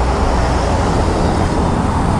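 Steady, loud low rumbling street noise with no distinct events.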